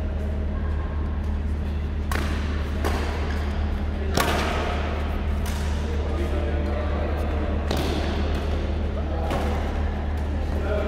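Badminton rackets striking a shuttlecock in a doubles rally: a handful of sharp, separate hits a second or so apart, the loudest about four seconds in, over a steady low hum in a large hall.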